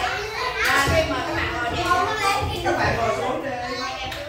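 A crowd of young children chattering and calling out over one another, several voices at once with no pauses.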